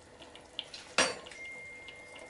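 A metal spoon clinks once, sharply, against the metal cooking pot about a second in, over the faint bubbling of the simmering pot.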